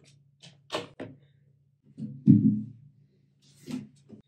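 Knocks and thuds of guitars being handled as an electric guitar is set down and an acoustic guitar is picked up and strapped on. The loudest is a thud with a short low ring about two seconds in, all over a faint steady low hum.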